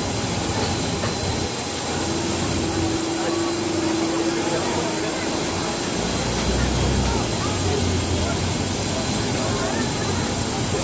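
Steady loud machine noise of aircraft ground equipment on an airport apron, with a constant high-pitched whine over it. A steady lower hum sounds for a few seconds near the middle, and a deeper rumble swells later.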